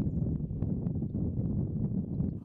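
Steady low rumble of wind noise on a microphone, with no clear pitch.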